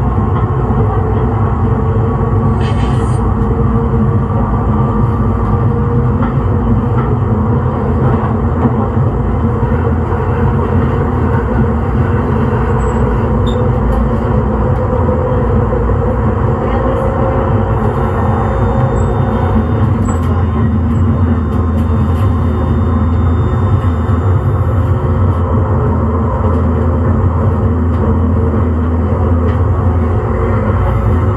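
Siemens S200 light rail vehicle standing at a platform, giving off a loud, steady low hum with a few faint steady tones above it.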